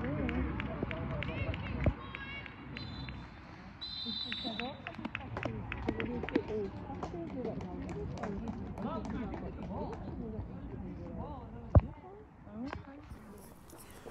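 Outdoor sound of a football match in play: distant players calling out, with scattered ball kicks and a brief high-pitched tone about four seconds in. A single sharp knock near the end is the loudest sound.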